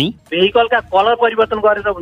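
A newsreader speaking Nepali in a radio news bulletin, the voice narrow-sounding as if over the radio.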